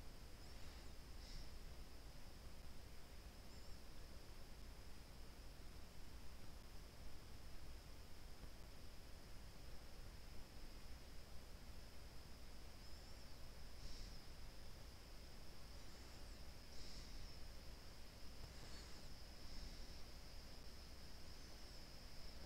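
Faint background noise of a desktop recording: a steady hiss with a thin, steady high-pitched whine and a low hum, broken only by a few faint ticks.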